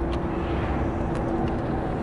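Road and engine noise inside the cabin of a moving SUV: a steady low rumble with a steady hum, and a few faint ticks.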